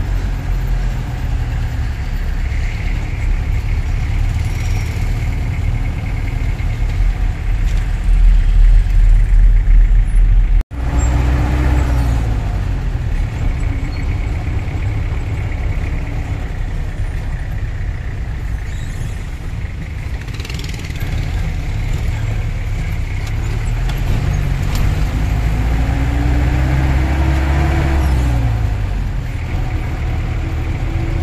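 Inside a matatu minibus moving through city traffic: steady low engine and road rumble, with a deeper, louder stretch for a couple of seconds that stops in a sudden brief dropout about a third of the way in. Later the engine note rises and falls.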